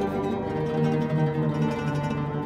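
Instrumental oud music: plucked ouds playing, with a low note held through most of the moment.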